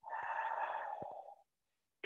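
A man's long, open-mouthed sighing exhale, lasting about a second and a half, let out as a settling-down breath.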